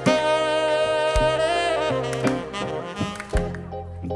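Studio band playing a slow saxophone-led tune, the kind of music put on for a sensual dance, with a bass drum beat about once a second.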